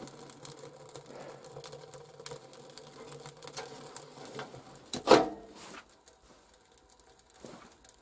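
Quiet crackling of freshly lit firewood in a homemade sheet-steel burzhuika stove, then a single sharp metallic clank with a short ring about five seconds in as the stove's steel door is shut.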